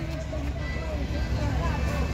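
Outdoor street ambience: a steady low rumble with faint voices of people around.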